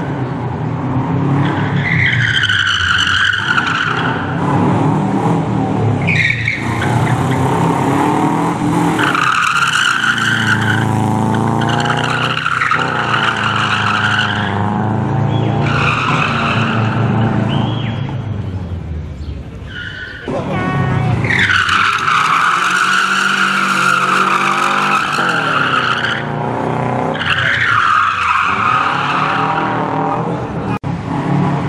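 Subaru Impreza rally car's flat-four engine revving hard, its pitch climbing and falling again and again through gear changes and braking, with tyres squealing through the turns. It dips briefly about two-thirds of the way in, then comes back loud at once.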